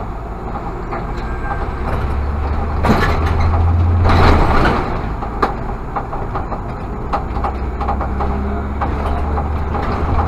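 Irisbus Citelis CNG city bus driving, heard from the driver's cab as a steady low engine drone. A louder rush of noise swells about three seconds in and fades by five seconds, as an oncoming bus passes.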